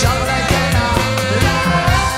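A live band playing: a saxophone plays a melody over electric guitar and drums, with a steady beat.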